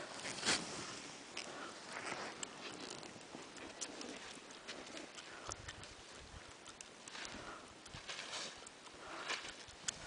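Heavy breathing close to the microphone, soft breaths every second or two, with scattered light clicks and crunches of skis and snow.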